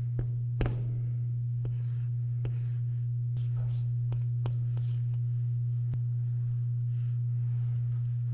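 Chalk writing on a chalkboard: a handful of sharp taps and short scratchy strokes as letters are written, the sharpest tap about half a second in. A steady low hum runs underneath throughout and is the loudest thing heard.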